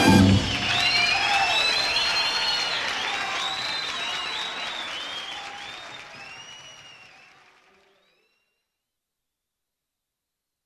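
The band's closing chord cuts off just after the start, followed by live audience applause with high rising-and-falling whistles. The applause fades out steadily to silence near the end.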